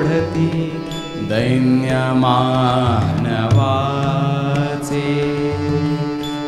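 Live Indian devotional music: a harmonium-accompanied melody with gliding, ornamented phrases over a steady drone.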